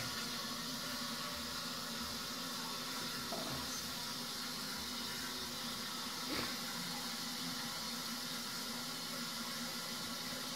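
High-level chain-pull toilet cistern refilling after a flush: a steady hiss of water running in through the fill valve. A faint short knock about six seconds in.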